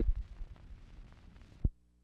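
Old news-film soundtrack with faint hiss and a few low thumps. About three-quarters of the way through comes a single sharp pop at the splice into blank leader, after which only a faint steady hum remains.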